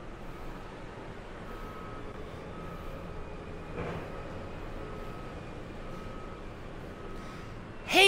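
A vehicle's reversing alarm beeping about once a second, each beep about half a second long, over a steady low background rumble; the beeping stops near the end.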